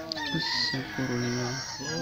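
A man's voice chanting a devotional melody in drawn-out notes that bend up and down, with one note held steady about a second in.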